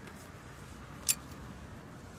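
Quiet outdoor background with a single short, sharp click about a second in.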